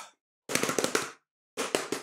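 Rapid clicking taps in runs of about ten a second, beginning about half a second in, with each run cutting off abruptly.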